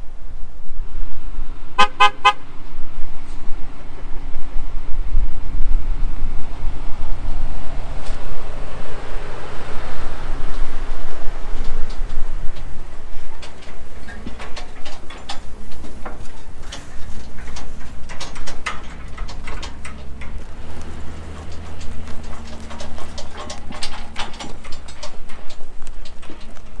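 Wind rumbling on the microphone at first. Later a pickup truck tows a utility trailer loaded with a sawmill, with metal clanks and rattles over a low engine hum.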